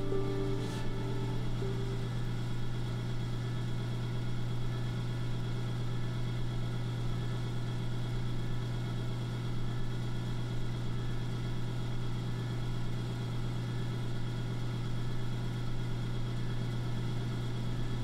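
A steady low hum that holds unchanged throughout. The last notes of soft music fade out within the first second or two.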